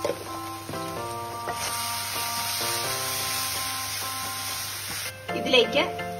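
Chopped garlic, dried red chillies and onion frying with tomato sauce and chilli powder in a non-stick pan, sizzling as they are stirred. The sizzle swells in about a second and a half in and cuts off suddenly about five seconds in.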